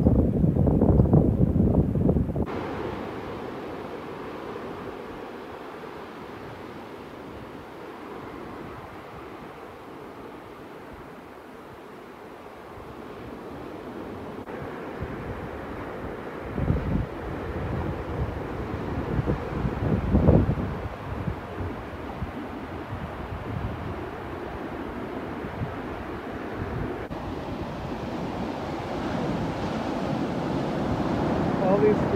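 Wind buffeting the microphone for the first two seconds or so, then cutting off abruptly to a steady wash of surf breaking and running up a pebble beach, with a few louder surges partway through.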